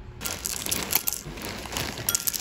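Foil-lined bag crinkling as it is tipped over a ceramic bowl, with small chocolate cereal pieces clicking and clattering onto the bowl. It starts suddenly about a fifth of a second in, with a sharp click near the middle.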